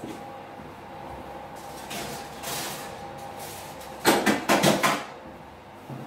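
Handling at an open kitchen oven: a quick run of sharp metal knocks and rattles about four seconds in, like oven racks and trays being moved, over a faint steady hum.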